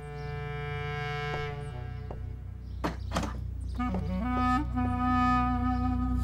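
Background score music: a slow wind-instrument melody of long held notes over a steady low drone, with a few sharp knocks about halfway through.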